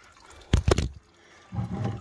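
A short, loud, rough knock-and-scrape about half a second in: the plastic bucket under the draining hydraulic hose being shifted against the machine and the camera. Around it is a faint trickle of hydraulic fluid running into the bucket.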